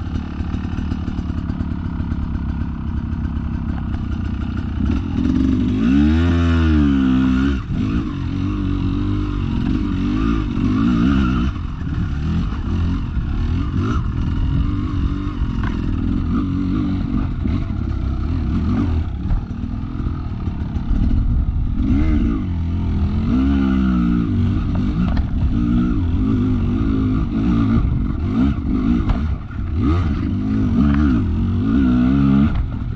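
Dirt bike engine heard from the rider's own bike, revving up and dropping back in repeated bursts as it climbs over rocks, with clatter from the bike jolting over the rocky ground.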